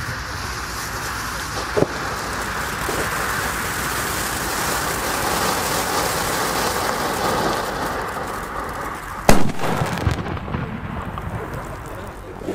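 Pyrotechnic fountain pre-burner of a Funke Mixed Flowers P1 firecracker (the Green Strobe) hissing steadily as it sprays sparks, then the flash-powder charge goes off about nine seconds in with one very loud, sharp bang that echoes briefly.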